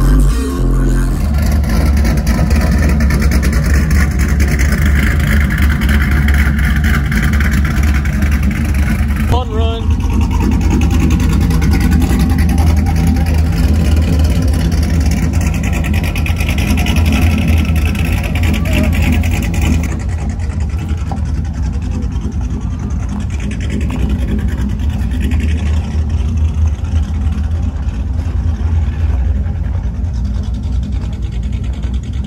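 Low, steady rumble of idling vehicle engines, with indistinct voices over it. The sound changes abruptly about nine seconds in and again about twenty seconds in.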